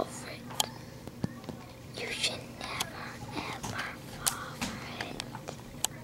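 Soft whispering close to the microphone, in short breathy patches, with scattered sharp clicks and taps from the camera being handled.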